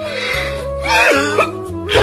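A man crying, with choked, throat-catching sobs, over slow sad background music.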